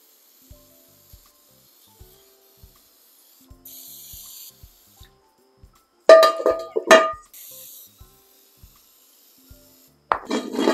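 Aerosol can of Easy-Off oven cleaner sprayed in two short hissing bursts, each about a second long, one before and one after the middle. A little past halfway the cast iron skillet is turned over and knocked down on the plastic sheet, giving two loud clanks that ring briefly. Faint background music with a soft regular beat runs underneath.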